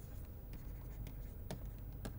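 Faint taps and scratches of a stylus writing on a pen tablet, with a few sharp ticks about half a second apart over a low steady hum.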